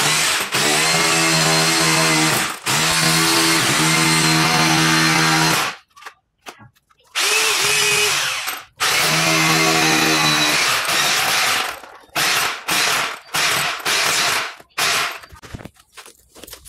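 Corded electric hammer drill boring and chipping into a plaster-and-brick wall. It runs in long stretches of several seconds with short pauses, then in a string of short bursts near the end.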